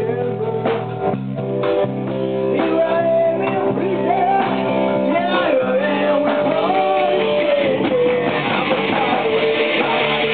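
A small rock band playing live: a man singing a melody into a microphone over electric guitar and drums.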